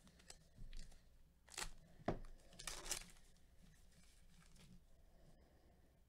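Wrapper of a 2020 Topps Gypsy Queen baseball card pack being torn open by gloved hands: several short rips and crinkles in the first three seconds, the loudest a sharp snap about two seconds in, followed by a longer rip.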